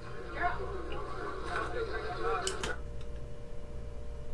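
Faint background voices, then two sharp clicks about two and a half seconds in, after which only a faint steady hum is left.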